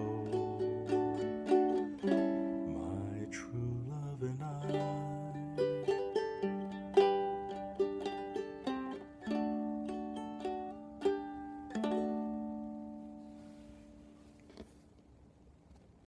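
Ukulele picking out the closing melody of a slow folk ballad, with a man's voice holding the last sung words over roughly the first few seconds. It ends on a chord at about twelve seconds in that rings and fades away, followed by one faint pluck.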